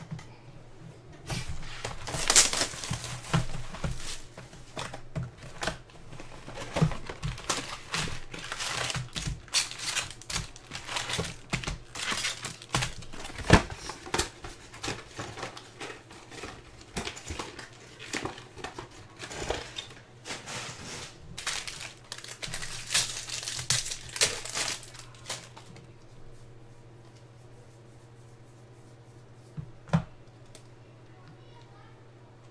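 Foil wrappers of jumbo trading-card packs crinkling and tearing as a hobby box is emptied and the packs are torn open by hand. The irregular crinkling and rustling starts about a second in and dies away at about 25 seconds.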